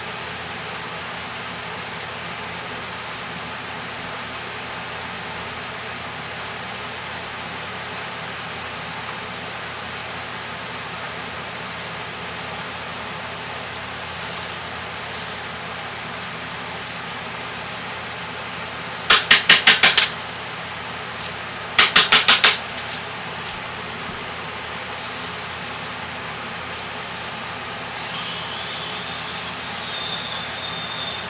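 Steady fan-like background noise throughout. About two-thirds of the way in come two short bursts of rapid clicking, about six quick clicks each, a couple of seconds apart. A faint high wavering tone sounds near the end.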